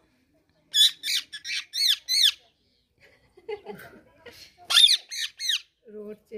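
A caged green parakeet squawking in two quick bursts of several shrill calls each, one about a second in and the other near the end.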